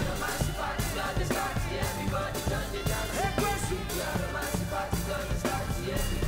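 Live band playing an Afrobeats song: electric bass guitar and drum kit over a steady beat.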